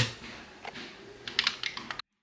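A four-motor LEGO SPIKE robot's motors whirring as it turns on the spot, with a quick run of sharp clicks near the end as it stops after its programmed turn.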